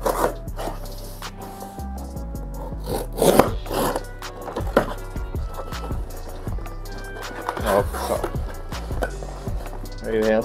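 Background music with held notes and a steady bass, over the scraping and rustling of cardboard box flaps being pulled open by hand. The loudest scrapes come about three to four seconds in, with more near the end.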